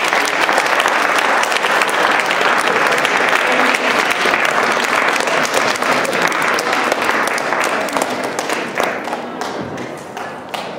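Audience applauding with dense clapping that thins out near the end.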